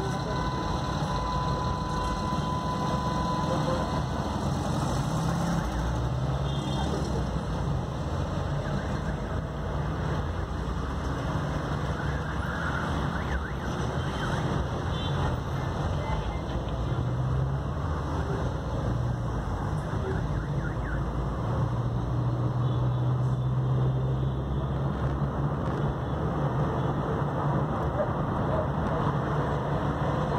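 Car engine and road noise heard from inside a car moving through city traffic, a steady low rumble that grows somewhat stronger in the second half. A steady high tone sounds for the first three or so seconds, then stops.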